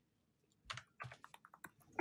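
Faint computer keyboard typing: a quick run of about eight key clicks starting under a second in.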